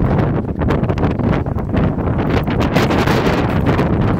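Sandstorm wind buffeting the microphone: a loud, continuous rushing with a deep rumble that swells and dips in gusts.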